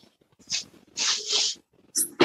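Soft breathy laughter from a woman: two short airy puffs of breath, the second longer, heard through a video-call microphone.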